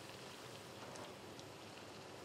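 Puris deep-frying in hot oil as they puff up: a faint, steady sizzle with a few small pops.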